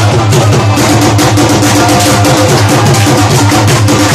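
Live Pashto folk instrumental music: a rubab, a hand-played barrel drum keeping a fast, even beat, and a keyboard holding melody notes.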